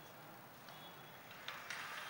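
Faint room tone of a large hall full of seated people, with a few soft clicks in the second half.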